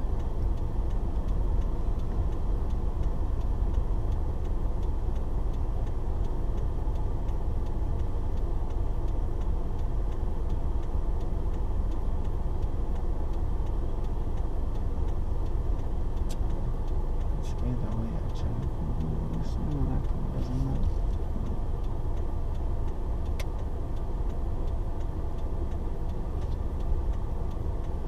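Car engine and road rumble heard from inside the cabin, low and steady, as the car idles and creeps forward in slow traffic. A few faint clicks come in the second half.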